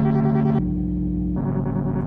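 Eurorack modular synthesizer played live: layered, held pitched tones that shift to new pitches twice, in a repeating sequence.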